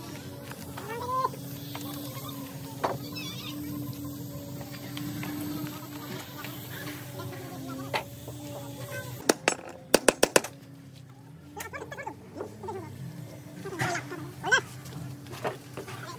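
Hammer blows on steel bus-body panels and frame: a few single sharp knocks, then a quick run of about six strikes about ten seconds in, over a steady low hum. Brief voice-like calls come near the start and again near the end.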